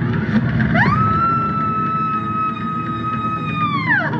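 Film soundtrack played over hall speakers. A single held tone slides up about a second in, holds steady, and slides down near the end, over a low background rumble.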